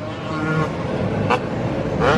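Motor vehicle noise: a steady rushing sound that swells over the first half second, with one brief sharp sound a little past the middle.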